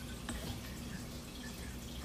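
Faint background between spoken sentences: a steady low hum with a few soft, short ticks.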